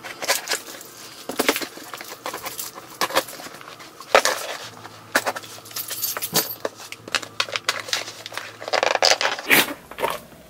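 A cardboard shipping box being handled and opened by hand: irregular taps, scrapes and rips of cardboard, with a longer paper rustle near the end as the flaps and tissue paper come open.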